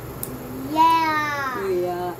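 A toddler's high-pitched squealing vocal sound, one drawn-out call of about a second that slides down in pitch at its end, over a lower adult voice humming.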